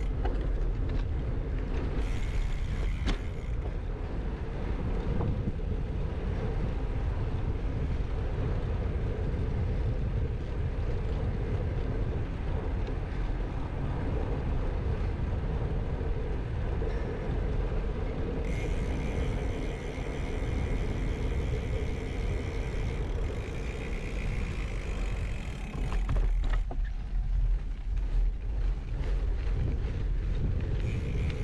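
Riding noise from a Scott Addict Gravel bike: steady tyre noise and wind on the handlebar-mounted camera's microphone as it rolls along at speed. Near the end the noise turns rougher and louder, with many small crackles, as the tyres run onto a dirt path.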